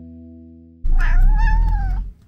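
A domestic cat's single loud meow, about a second long, starting suddenly near the middle and rising then falling in pitch.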